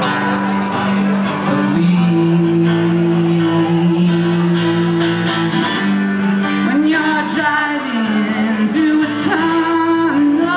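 A live indie rock band playing: guitar and singing over long held low notes that change about every few seconds.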